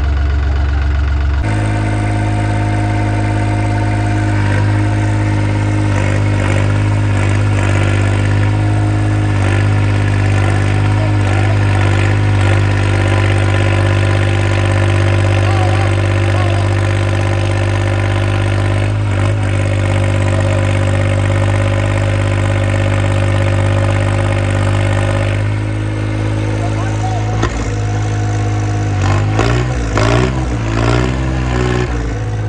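Diesel tractor engine running steadily at high revs while the tractor stands on its rear wheels in a wheelie stunt, the rear tyres churning sand. Near the end the revs change and rise and fall as the tractor comes down onto all four wheels and drives off.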